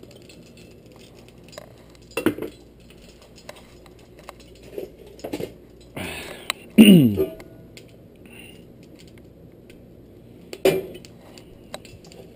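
A few scattered clinks and knocks of metal kitchen utensils and cookware being handled, with a loud throat-clear about seven seconds in.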